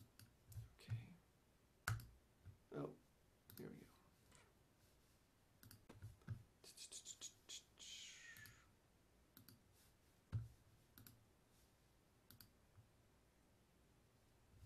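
Near silence, broken by scattered faint computer-mouse clicks and small knocks, with a brief hissy rustle a little past halfway.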